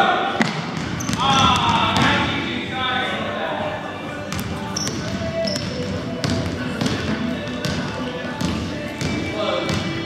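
Several basketballs bouncing on a hardwood gym floor as children dribble, an irregular scatter of short thuds, over indistinct voices.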